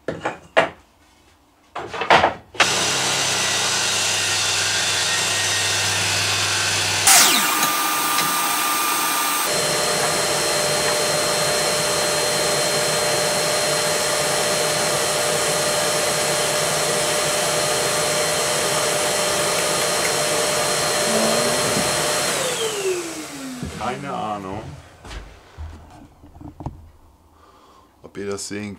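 A few knocks of wood being handled, then a table saw switched on and running steadily, with a short change in its sound a few seconds in as a wooden strip is cut. Near the end it is switched off and winds down with a falling tone.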